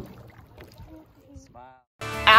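Faint kayak paddling on a lake, the paddle dipping and water lapping, with distant voices calling across the water. A short voiced call comes near the end, then the sound cuts out.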